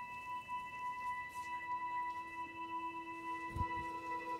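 Quiet ambient score: a sustained ringing tone with several steady overtones, like a singing bowl. A soft low thump comes a little before the end.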